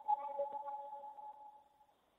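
A steady electronic tone of two pitches sounding together, slowly fading away near the end.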